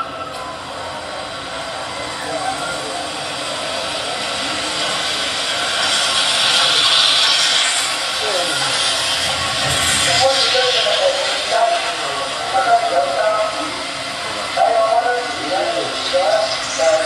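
Ambient noise at a greyhound racing stadium. A rushing sound swells and fades, loudest about seven seconds in, and spectators' voices are heard in the second half.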